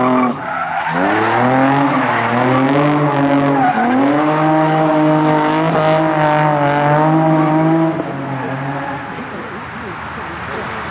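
Nissan 350Z drifting: the engine revs up and down in waves with the throttle over a haze of tyre noise, then falls away about eight seconds in.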